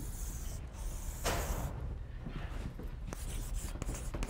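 Chalk scraping on a blackboard as a long curved brace is drawn in a few strokes, the strongest about a second in, with small ticks of the chalk against the board.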